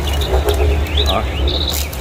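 Market-hall ambience: a steady low hum with several short, high chirps of small birds.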